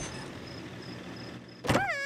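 Cartoon car engine running at idle, a steady low hum. Near the end a sharp click comes, then a short rising-and-falling vocal call.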